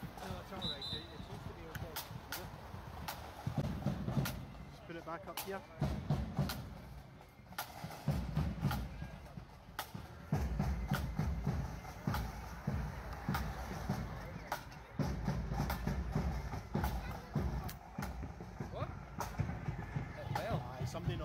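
Background voices of people gathered in the street, with scattered sharp knocks and patches of low rumble.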